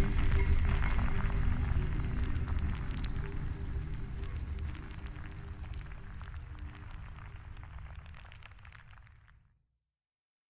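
Strong wind rumbling and crackling against a microphone, layered under a faint ambient drone, fading steadily away to silence about nine and a half seconds in.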